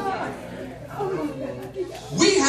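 Quiet talk and murmuring from people in a large hall, away from the microphone, in a lull after laughter.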